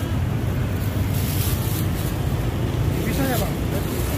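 Steady low rumble of city street traffic, with a brief higher hiss about a second in.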